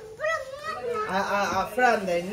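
Children playing, their high voices calling out and chattering in short bursts.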